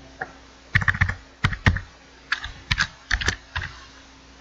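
Typing on a computer keyboard: about a dozen short keystrokes in uneven bursts, as a short name is typed in.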